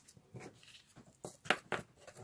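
Fingers handling and rubbing a paper scratch card on a table: a few short scratchy strokes, the loudest about halfway through.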